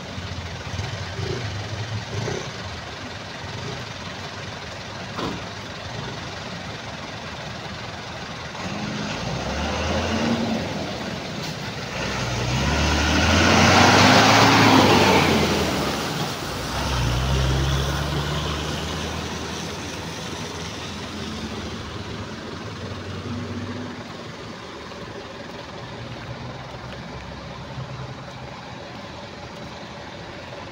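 Road traffic of cargo trucks passing, engines running, with one vehicle passing close about halfway through as the loudest moment.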